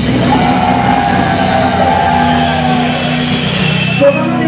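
Live funk band playing, with one long, slightly wavering held note over a steady low bass.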